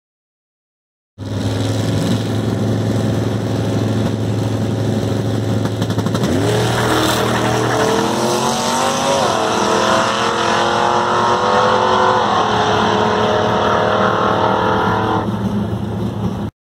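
A drag car's engine, held at steady revs while staged, then launching. About six seconds in, the engine note climbs; it drops sharply at a gear change near nine seconds and climbs again as the car pulls away down the strip.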